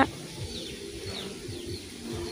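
Birds calling faintly in the background, with a few short, high, falling chirps over quiet outdoor ambience.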